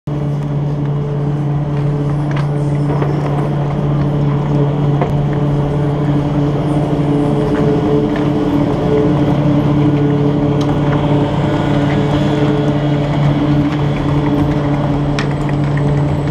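Garaventa chairlift station machinery running with a steady low hum, with a few sharp clicks over it.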